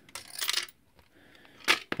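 Handling noise as the steel-wire tube retainer is worked out of a portable TV's plastic case: light clicks and a short scraping rustle, then one loud metallic clink near the end.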